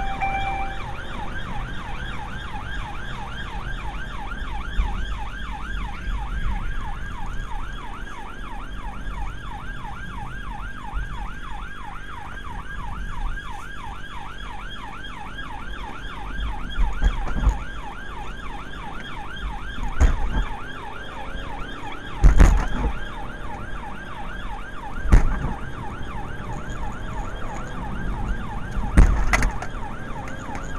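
Police car siren wailing in a fast, continuous rising-and-falling yelp, heard from inside the pursuing car over the rumble of its engine at speed. In the second half several heavy thumps break through, as the car goes over road humps.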